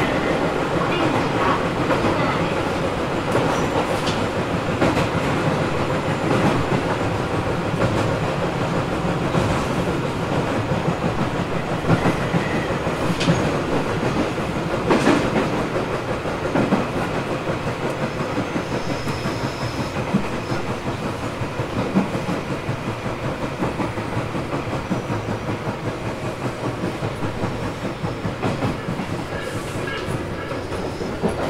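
Tobu 800 series electric commuter train running between stations, heard from inside motor car MoHa 804-2: a steady rumble of wheels, traction motors and running gear, with rail-joint clicks every few seconds. The overall level eases a little in the second half.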